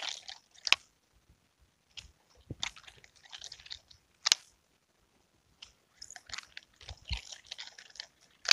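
Nunchaku being twirled and caught in the hand: irregular rattling from the sticks and their linkage, broken by a few sharp clacks.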